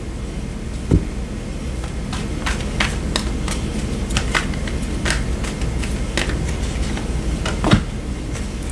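Tarot cards being shuffled and laid down on a table: a run of light card clicks and taps, with a firmer knock about a second in and another near the end, over a steady low hum.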